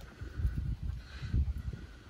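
Low, uneven rumble on the handheld microphone, with a faint hiss above it.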